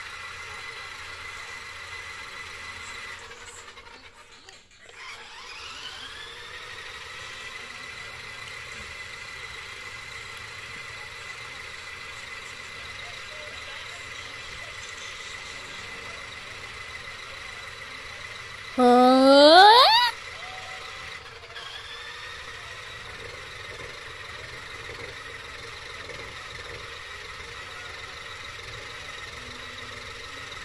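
Small electric motor of a remote-control Sonic-themed spinning toy whining steadily at a high pitch as it spins on carpet. The whine fades out twice and comes back rising in pitch as the toy spins up again. About 19 s in, a loud rising sweep in pitch lasts about a second and a half.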